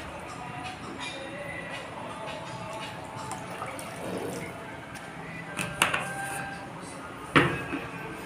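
Water pouring from a plastic bottle into a pan of khichadi, splashing into the liquid. Two sharp knocks come near the end, over faint background music.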